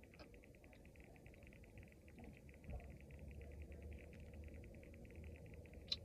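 Near silence: faint background hum with a faint, fast, high-pitched pulsing running underneath.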